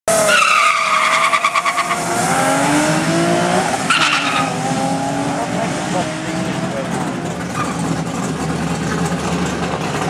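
Nissan 350Z's V6 engine launching hard from the drag strip start line and accelerating, its pitch rising through the gears with a break for a gear change about four seconds in, then fading as the car runs away down the track.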